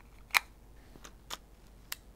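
A few sharp clicks as a macro extension tube and lens are fitted and locked onto a mirrorless camera's E-mount, the first and loudest about a third of a second in.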